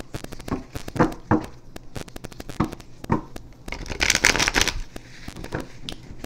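Tarot deck being shuffled by hand: a run of sharp card clicks and taps, with a longer, denser burst of rapid card flicking about four seconds in.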